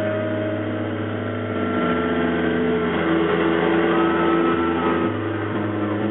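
Live rock band holding a droning wash of sustained electric guitar notes. The held chord shifts a few times, with a faint gliding tone over it.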